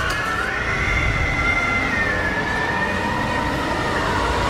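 Horror-film soundtrack: a sustained, high, siren-like wail that slowly wavers and slides in pitch, over a low rumble.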